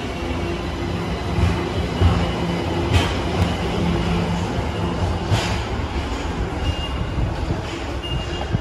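Subway station ambience: a Ginza Line train's steady hum and rumble, fading after about six seconds, with a few sharp knocks.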